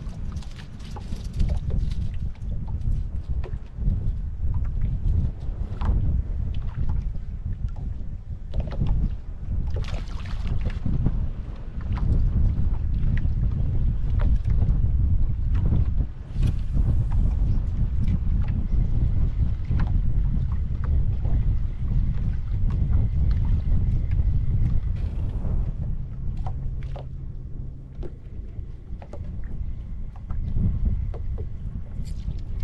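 Wind buffeting the microphone on a small skiff, with water lapping against the hull and scattered light knocks.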